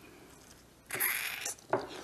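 Silence for about the first second, then brief rustling and scraping handling noise as hands move over a transmission resting in cardboard packing, with a single click near the end.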